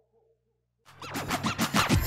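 DJ record-scratch effect: after a short silence, quick back-and-forth scratches sweeping up and down in pitch start about a second in and grow louder, running straight into an electronic dance beat at the very end.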